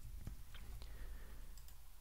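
A few faint computer keyboard key clicks as letters are typed, scattered and irregular.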